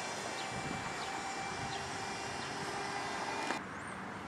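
Steady outdoor background noise of distant traffic with a faint steady hum; the hiss drops away suddenly near the end.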